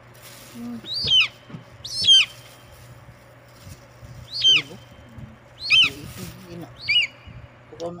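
A bird chirping: five short, high calls, each sliding down in pitch, spaced about a second or so apart, over a steady low hum.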